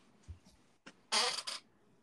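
A person's short breathy exhale in two quick puffs about a second in, with a faint low bump on the microphone just before it.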